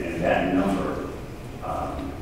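Speech only: a person talking in a meeting room, words not made out.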